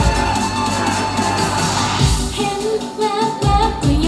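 Pop song played loud through a stage PA: a dance track with a steady bass beat that thins out about halfway, where female voices come in singing the melody.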